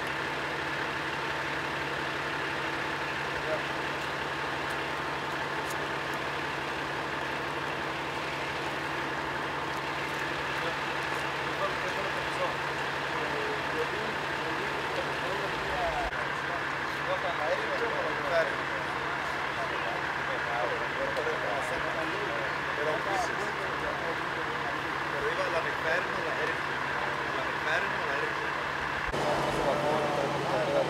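A fire engine's engine idling, a constant steady hum, with faint voices of people talking over it.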